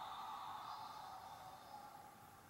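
Faint sustained tone fading steadily away: the closing sound of a music video playing on a phone.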